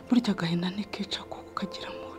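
A woman's hushed, broken whispering for about the first second, fading to a murmur, over soft sustained background music.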